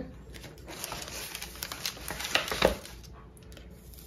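A sheet of wax paper crinkling and rustling as it is pushed into an open hardcover book and creased by hand, with scattered light ticks and taps of paper and pages.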